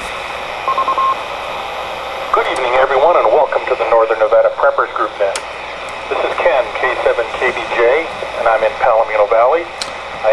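Ham radio transceiver's speaker: steady receiver hiss, then a short broken beep about a second in. From about two seconds in comes a voice over the air, thin with no low end, as the net gets under way.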